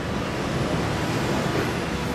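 Steady, low rumbling street noise with no distinct events, like road traffic.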